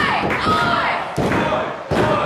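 Several heavy thuds of wrestlers striking each other and hitting a wrestling ring, with a shouted voice between them.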